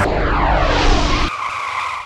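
Car sound effect over the end of the electronic theme music: a multi-toned engine note falling in pitch, like a car speeding past, then the music's beat stops a little over a second in and a steadier high screech, like tyres squealing, rings on.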